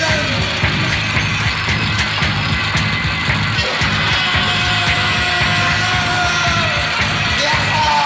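Loud, harsh, distorted music: a dense wall of noise with a drawn-out tone or voice running through its middle, falling away near the end.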